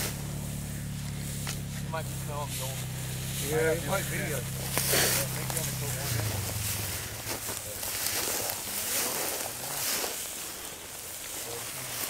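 Footsteps swishing through tall dry grass, with faint distant voices early on. A low steady hum fades out about six seconds in.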